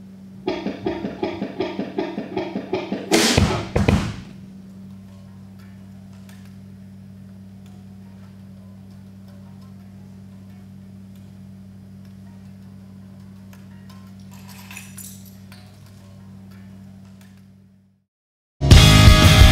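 A steady low hum throughout. In the first few seconds there is a quick run of evenly spaced clicking strikes, about four a second, which ends in a loud crash. A faint clatter comes near the end.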